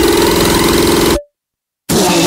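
Hard electronic dance music from a DJ set with a sustained buzzing synth note; about a second in it cuts off abruptly to half a second of silence, then a different track comes back in loud near the end.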